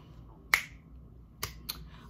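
Three short, sharp clicks over a low steady room hum: a loud one about half a second in, then two fainter ones close together near the end.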